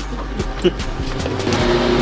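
Background music with a steady, even level, and a couple of light knocks in the first second; a held, steady tone sets in about a second and a half in.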